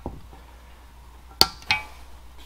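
Two sharp metallic clinks about a third of a second apart, the first louder, from pliers working the safety wire off a Lycoming O-360 oil pump housing.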